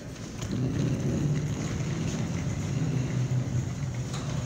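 Rolling suitcase wheels rumbling steadily over a hard, smooth floor, starting about half a second in.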